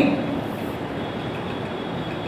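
Steady, even background noise with no distinct events, heard in a pause between a man's spoken sentences.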